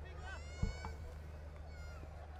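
Faint cricket-stadium ambience: a steady low hum, with faint high-pitched wavering calls like a distant voice early on and again near the end, and a soft thump just over half a second in.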